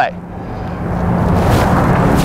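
Rumbling road-traffic noise with a low steady hum, swelling steadily louder over two seconds.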